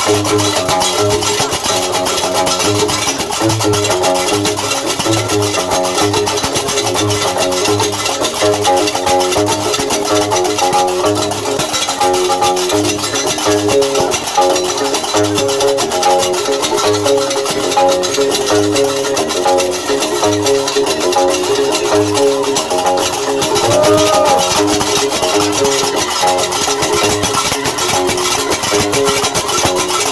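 Diwan (Gnawa) music: a guembri, the three-string bass lute, plucks a repeating low bass line under the fast, steady metallic clatter of qraqeb iron castanets.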